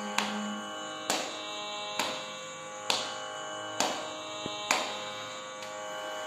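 Tanpura drone for Carnatic singing, its strings sounding steadily with a sharp pluck roughly every second. A held sung note fades out in the first second.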